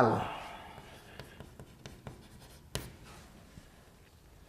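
Chalk writing on a blackboard: faint scratches and small taps as a word is written, with one sharper tap nearly three seconds in.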